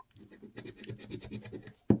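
Metal coin scraping the latex coating off a scratch-off lottery ticket in quick, short back-and-forth strokes to uncover a number. The strokes start about a quarter second in and stop just before the end.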